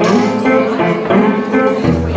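Small acoustic swing band playing an instrumental passage: strummed acoustic guitars over double bass, with accordion.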